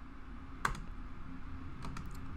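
Computer keyboard clicks while editing: one sharp keystroke about two-thirds of a second in and a couple of faint ones near the end, over a low steady hum.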